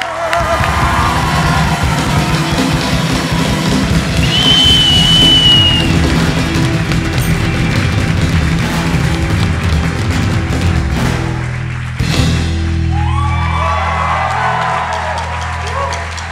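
Live band of acoustic and electric guitars, bass, cajón and drums playing, with the crowd whooping and a long whistle about four seconds in. About twelve seconds in the band hits and holds a final chord while the crowd cheers.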